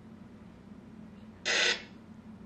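Low steady room hum, then about one and a half seconds in a single short burst of noise lasting about a third of a second. The burst comes over a remote participant's video-call audio line, narrower in sound than the room microphone.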